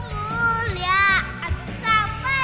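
A young boy singing an Indonesian worship song into a microphone over a backing track. He holds one long wavering note, pauses briefly, and starts the next phrase near the end.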